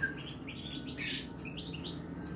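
A young European goldfinch chirping over and over while being hand-fed from a stick, in a run of short high chirps that is loudest about a second in: food-begging calls.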